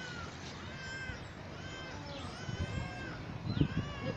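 An animal calling repeatedly: a series of short pitched calls, each rising and falling, roughly one a second, with a few low thumps near the end.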